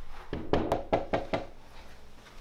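A quick, even run of about six knocks on wood, about five a second.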